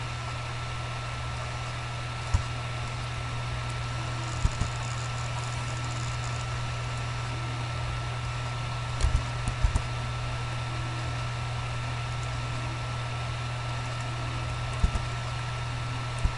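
Steady electrical hum and hiss from a desk microphone. A few short computer-mouse clicks stand out, about two and a half, four and a half, nine to ten, and fifteen seconds in.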